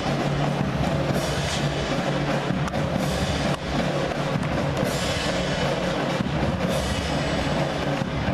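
Middle school marching band playing, with drums beating under held notes.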